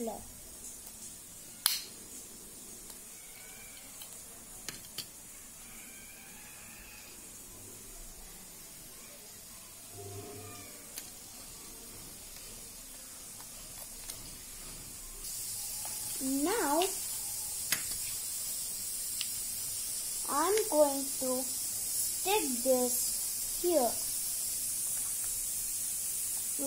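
A small handheld stapler closing on folded paper with one sharp click about two seconds in, followed by a couple of faint clicks a few seconds later. Later, over a steady hiss, a voice speaks a few short phrases.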